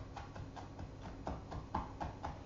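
Kitchen knife mincing a garlic clove on a wooden cutting board: a quick, even run of light chopping taps, about five or six a second.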